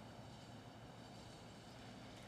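Near silence: room tone with a faint low rumble.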